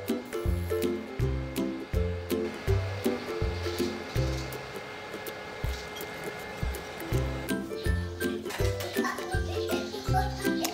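Background music with a steady beat and a pulsing bass line; the bass drops out for a few seconds midway, then returns.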